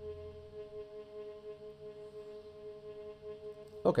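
A sustained viola note, the A-flat below middle C, played back from a sample through a reverb; it holds steady, then fades out shortly before the end.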